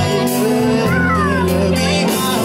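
Live band music from acoustic guitar, electric bass, drums and keyboards, with held bass notes underneath. A high note glides down in pitch about a second in.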